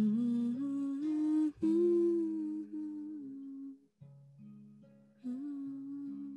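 A woman humming a wordless melody with closed lips over acoustic guitar. The humming drops out for about a second past the middle, leaving the guitar alone, then comes back.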